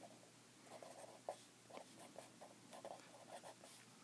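A pen writing words on graph paper: a run of faint, short scratching strokes of the tip on the paper, starting a little under a second in.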